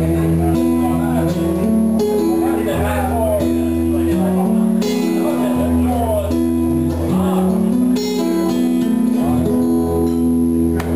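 Acoustic guitar strummed steadily, its chords changing every second or so, with a voice singing a wordless, gliding line over it.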